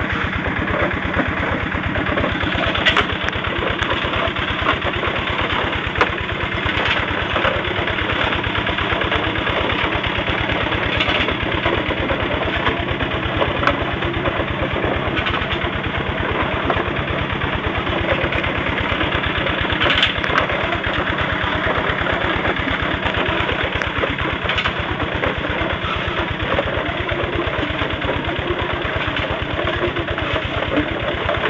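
Engine running steadily, driving rotating drum mills that tumble and grind gold ore with rock, with a few sharp knocks scattered through it.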